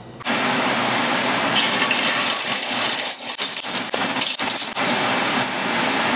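A small piece of meat frying in hot oil in a stainless steel skillet, a steady crackling sizzle that starts suddenly just after the beginning and eases briefly a couple of times in the middle.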